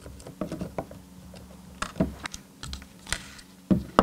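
Irregular light clicks and taps from handling a miniature replica camera and its strap, with small metal strap rings and plastic knocking together on a wooden tabletop.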